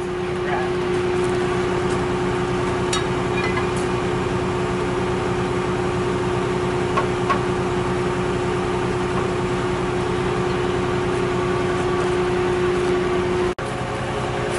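Tigercat L830C feller buncher's diesel engine running steadily under hydraulic load, with a constant whine over the engine note, as its hydraulics push the piston out of the opened cylinder barrel.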